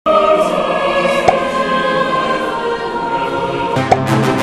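A choir singing long held notes, with a sharp click about a second in and another just before the end, where different music with lower notes takes over.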